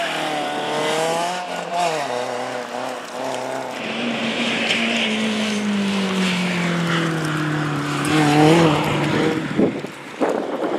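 BMW E30 rally car's engine revving up and down as the car slides on cobblestones, then a long engine note falling slowly over several seconds as it drives on. Near the end the revs climb briefly and this is the loudest moment.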